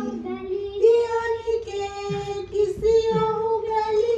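A child singing a melody in long held notes, three or four sustained notes one after another.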